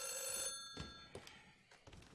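Desk telephone ringing: one ring that stops about half a second in, its tone dying away over the next half second. A few light knocks follow as the handset is lifted.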